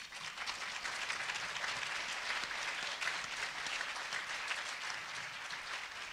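Audience applauding: many hands clapping steadily, starting at once and easing a little toward the end.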